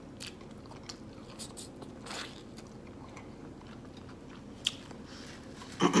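Close-up chewing of crispy fried chicken: soft, scattered mouth clicks and small crunches, with one sharper click a little before the end. A throat clear cuts in at the very end.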